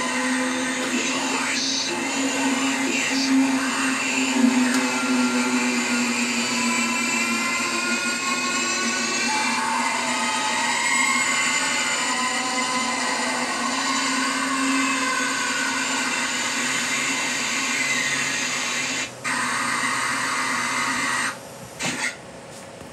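Animated haunted-TV Halloween prop playing its soundtrack: a steady static-like hiss with drawn-out tones and voice-like sounds over it. It cuts out briefly twice near the end.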